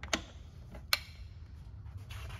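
Two sharp clicks from the boom lift's platform control box as its joystick and toggle switches are handled, one near the start and one about a second in, over a low steady hum.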